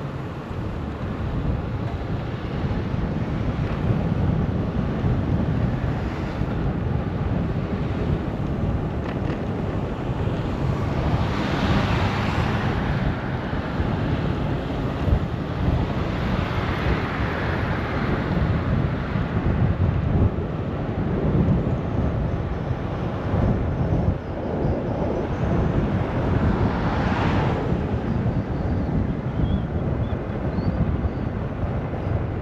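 Wind buffeting the microphone over a steady low rumble of riding, with three louder hissing swells spread through.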